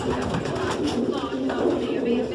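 Many homing pigeons cooing at once, a continuous overlapping chorus.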